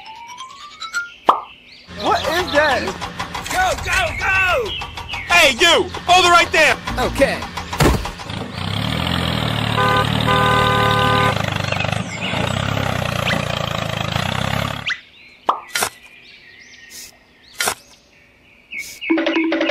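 Edited cartoon sound effects over music: rising whistle glides, then squeaky, high-pitched vocal sounds and laughs. After a sharp hit, a steady engine-like rumble runs for about seven seconds with a few beeping tones in its middle, then cuts off, leaving a few soft clicks.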